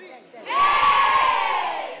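A group of children shouting together in one long cheer. It begins abruptly about half a second in and sags slightly in pitch as it fades.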